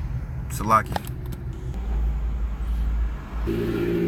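Steady low rumble like a running car, with a humming drone of a few steady tones joining in near the end.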